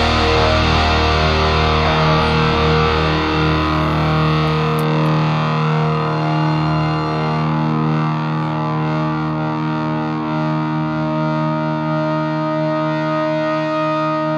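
Distorted electric guitar holding the final chord of a heavy metal song, ringing on steadily and slowly thinning out.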